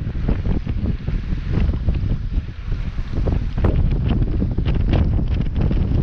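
Wind buffeting the microphone: a loud, gusty rumble with scattered crackles.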